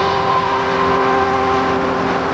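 Television segment theme music: a held synthesizer chord over a rushing noise wash, like a storm effect.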